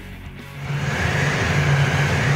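Supercharged engine running hard on an engine dyno, coming up loud about half a second in and holding steady.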